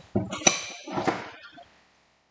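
A sharp clink of kitchenware about half a second in, ringing briefly, amid some lower clatter that dies away before the end.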